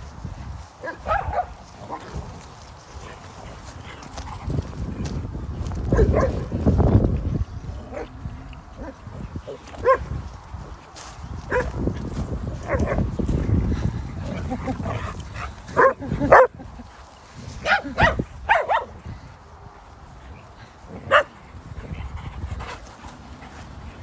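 A group of dogs playing rough together, giving short barks and yelps now and then, the sharpest ones in the second half.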